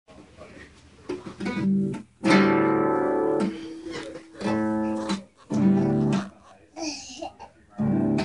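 Acoustic guitar being strummed in short spells of about a second each, with brief pauses between them.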